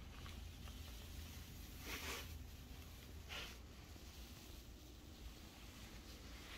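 Quiet indoor room tone with a steady low hum, broken by two brief soft rustles about two and three and a half seconds in.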